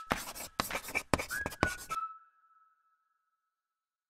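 Chalk scratching on a chalkboard in a quick series of strokes for about two seconds, with a thin high tone underneath that lingers and fades out about a second after the strokes stop.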